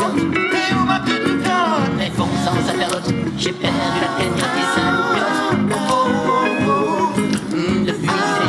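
Live music: a man singing over a semi-hollow electric guitar, playing continuously.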